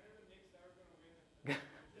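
A faint, distant voice speaking away from the microphone, then a short burst of laughter about one and a half seconds in.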